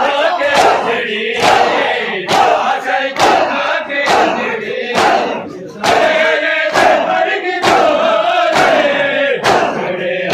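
A crowd of men beating their chests in unison in matam: a sharp, loud slap a little more than once a second. Massed male voices chant between the strikes.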